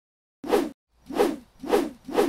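Three short whooshes, each swelling and fading away, about half a second apart with silence between them.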